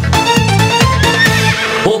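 Upbeat Italian dance song playing with a steady bouncy beat of about four strokes a second. A horse whinny sound effect in the music wavers up and down through the second half.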